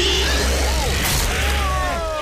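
Cartoon action sound effects: a sudden loud rush of noise with a sharp hiss about a second in, then a run of short rising-and-falling squeals.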